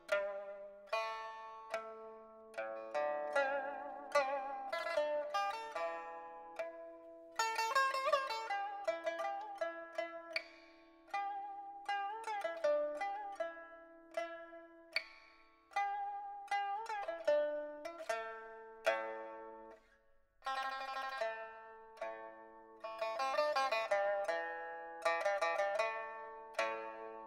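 Background pipa music: a solo Chinese lute playing a melody of plucked notes that ring and fade, with passages of fast tremolo and a brief pause about three-quarters of the way through.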